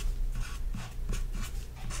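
Felt-tip marker writing on paper: a run of short, soft scratchy strokes as letters are drawn, over a faint steady low hum.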